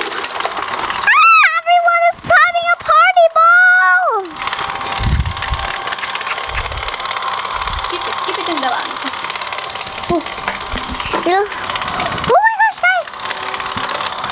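Battery-powered Disney Frozen bubble machine's fan motor running steadily, blowing bubbles. A child's high-pitched voice rises over it briefly about a second in and again near the end.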